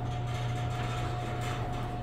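LiftMaster garage door opener running as it raises the door: a steady motor hum with a thin, steady whine over it.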